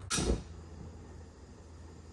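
50,000 BTU propane fire pit being lit: one short, sudden click-and-whoomph as the burner catches about a quarter second in, then the flame burns with a faint steady hiss.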